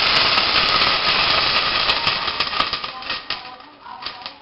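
Water hitting hot oil and whole spices in a steel pot: a loud sizzle and hiss as it flashes to steam, thinning into scattered crackles and pops that die away over about three seconds.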